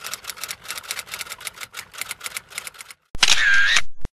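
Typewriter-style clicking sound effect, a rapid run of about eight sharp clicks a second, under an animated end-card title. A little after three seconds in, it gives way to a loud, short burst with a dipping tone in it, a logo sting.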